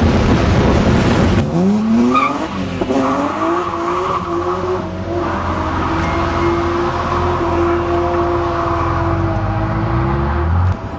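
A car engine accelerating, its pitch rising twice as it pulls through the gears, then holding a steady high drone at constant revs. Before it, in the first second and a half, there is a loud rushing noise of wind and road at speed.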